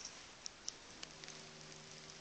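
Faint room noise with a low steady hum, broken by three brief sharp clicks close together about half a second to a second in.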